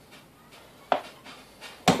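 Two short, sharp clicks of tools being handled on a wooden workbench, a faint one about a second in and a louder one near the end, over quiet room tone.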